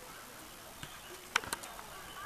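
Faint outdoor background of distant voices over a steady hiss, with two sharp clicks close together about one and a half seconds in.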